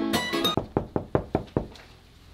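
Plucked-string background music ends about half a second in, then comes a quick run of about six knocks on a hotel room door.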